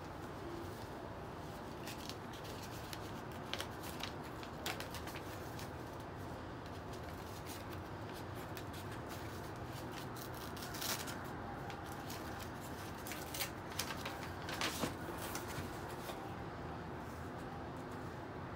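Crinkling and rustling of brown kraft packing paper and cardboard as a shipping box is unpacked by hand. Short, scattered crackles come at irregular intervals and are busiest in the last third.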